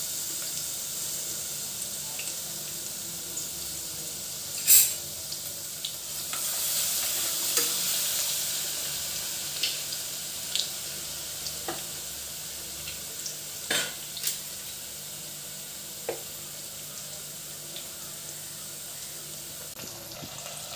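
Ginger paste sizzling steadily in hot oil with whole spices in a stainless steel pressure cooker. Short sharp clicks and scrapes of a spoon against the steel pot are heard now and then as it is stirred, the loudest about five seconds in.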